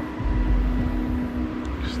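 Handheld two-way radio giving out steady static hiss with a low hum and a thin high steady tone while its antenna is being adjusted; the audio is garbled by poor signal or interference.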